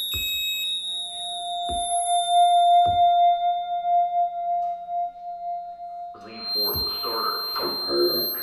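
Live electronic music from a table of electronics played through PA speakers: high steady tones and a few low thumps, then one long held tone, and about six seconds in a dense, grainy texture comes in under a high steady tone.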